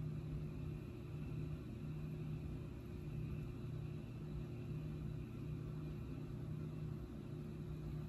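Steady low background hum with a faint hiss, even and unchanging throughout.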